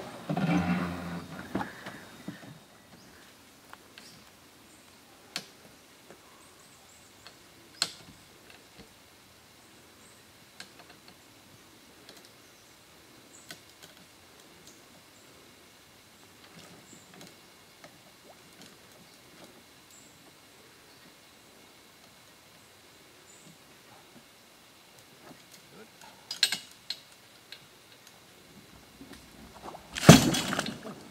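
Sparse metallic clicks and knocks from a boat trailer's winch and fittings being worked by hand to release the boat, with a quick cluster of clicks near the end.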